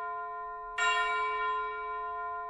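A bell struck once, a little under a second in, ringing on and slowly fading, over the fading ring of an earlier strike.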